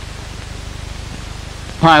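Steady hiss with a faint low hum from an old film soundtrack, with no other sound over it. A man's narration begins near the end.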